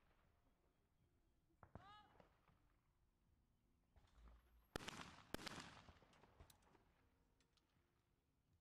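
Two trap shotgun shots about half a second apart, each followed by a short echo off the range; both targets are hit.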